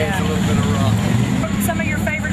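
A steady low engine rumble, with people's voices talking over it.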